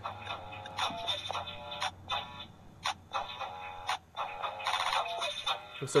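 Oreo DJ Mixer toy playing an electronic music loop of short pitched notes and beats, set off by a Most Stuf Oreo placed on its turntable.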